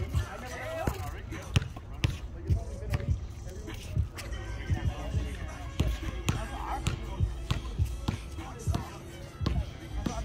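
A basketball being dribbled on a concrete court: a string of irregular bounces, about two a second, with people talking in the background.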